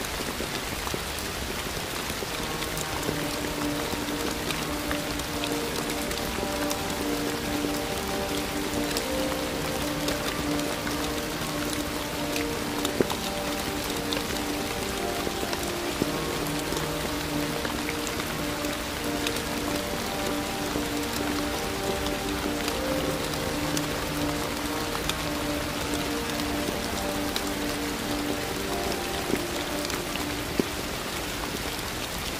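Steady rain, an even hiss dotted with small drop ticks. Soft, slow instrumental notes are held underneath it from about three seconds in.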